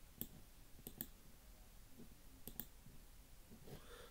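Faint clicks of a computer mouse: a few short, sharp clicks, two of them coming in close pairs about a second and about two and a half seconds in.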